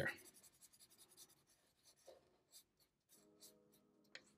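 Faint felt-tip marker strokes on paper: a quick run of small scratchy strokes filling in a dark patch, thinning to a few single strokes.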